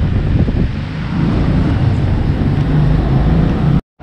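Loud low rumble of wind buffeting the microphone, cutting off abruptly just before the end.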